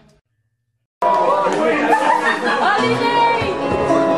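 Brief dead silence as one track ends, then a live concert recording starts abruptly: loud crowd chatter and voices in a large hall, with held instrument notes under them.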